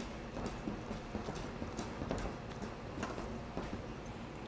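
Wire whisk stirring batter in a stainless steel bowl, its wires ticking and scraping against the metal in a quick run of light clicks.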